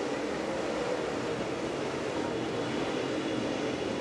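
A pack of dirt late model race cars accelerating away from the start, their V8 engines blending into one steady roar.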